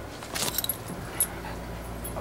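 Brief metallic jingling and rustling from a small dog's harness as the dog scrambles about, loudest about half a second in, with one more sharp click a little after a second in.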